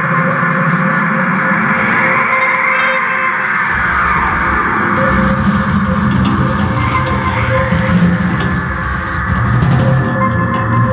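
Live psychedelic rock band playing loud, with electric guitar over drums and cymbals. A deep low end comes in about four seconds in.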